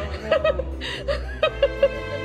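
Background music with about five short bursts of chuckling laughter on top.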